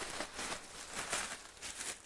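Black plastic bag rustling and crinkling as it is handled and folded, an irregular run of soft crackles.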